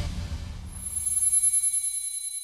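A TV show's logo-sting sound effect: the low end of the music fades out in the first second as a high, shimmering ringing chime comes in, fluttering rapidly and slowly dying away.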